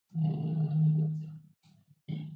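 A man's voice holding one long drawn-out vowel at a steady pitch for about a second and a half, like a hesitation sound, followed by a few short voiced sounds near the end.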